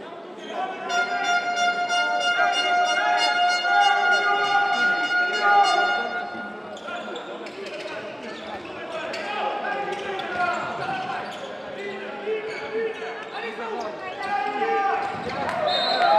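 Handball being bounced on an indoor court amid players' and spectators' voices echoing in a sports hall. A long steady pitched tone sounds for several seconds near the start.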